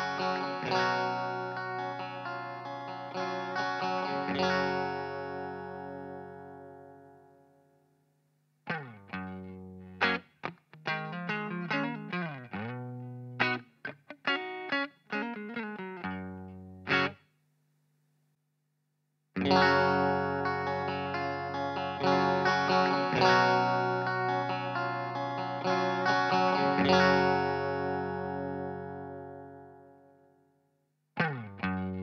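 Fender Stratocaster electric guitar played through the normal channel of a Blackface Fender Bassman 50-watt head, heard through a loadbox and speaker impulse response rather than a miked cabinet. A chord rings and dies away, then a run of short picked notes with gaps, a pause of about two seconds, and another chord left to ring out.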